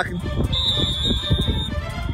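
A referee's whistle blown once: a single steady shrill note lasting about a second, starting about half a second in. It blows the play dead.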